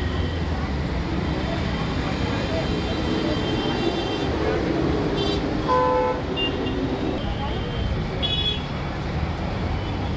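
Busy road traffic: a steady wash of engine and tyre noise, with a short vehicle horn toot about six seconds in and a few brief higher toots after it, and people talking in the background.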